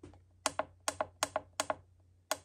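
Push buttons on a heat press's digital control panel clicking as the down button is pressed four times in quick succession, each press a close pair of clicks, lowering the temperature setting.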